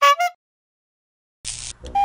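Over a second of dead silence at an edit cut. Before it comes a brief falling pitched tone. After it, about one and a half seconds in, a short burst of hiss with a few clicks, and a steady tone starts near the end.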